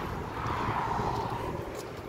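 Steady outdoor background noise: a low rumble under a soft, even hiss, with no distinct event.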